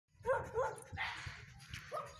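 A young Siberian Husky barks twice in quick succession, then gives a brief breathy hiss and a third, fainter bark near the end.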